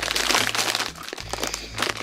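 Plastic snack bag crinkling as it is handled, busiest in the first second and quieter after.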